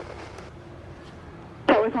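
Air traffic control radio feed: a steady low hiss and rumble between transmissions, then a controller's transmission starts near the end.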